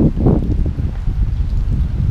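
Wind buffeting the camera microphone, a loud, uneven low rumble.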